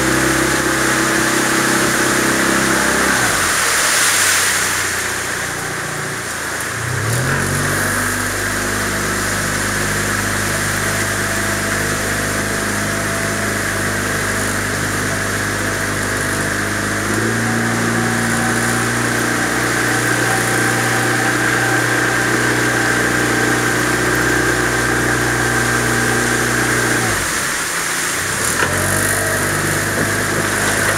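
Small outboard motor pushing a boat at low speed. It is throttled back a few seconds in, picks up again about seven seconds in, runs a touch faster from the middle on, and eases off and picks up once more near the end.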